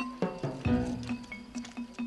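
Background music of evenly spaced, softly plucked notes, with a camel's low, rough grunting call from about a quarter second in, lasting roughly a second.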